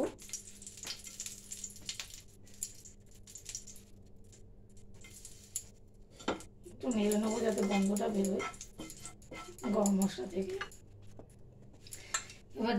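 Whole green cardamom pods dropped into hot oil in a frying pan, with faint crackling and light clicks and one sharper click about six seconds in. A woman's voice speaks briefly in the second half.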